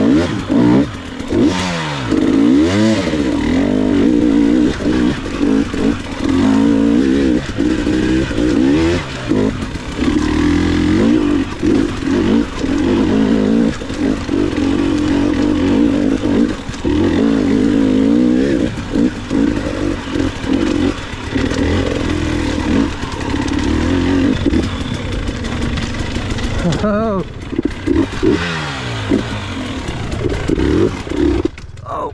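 Dirt bike engine running and revving up and down as the rider works the throttle over rough, rocky trail, with frequent brief drops in revs. There are sharper rises and falls in pitch near the start and near the end.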